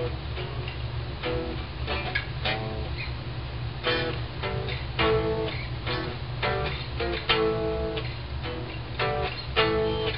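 Electric guitar played clean, without effects: single notes and short runs picked at an uneven pace. A low steady hum runs underneath.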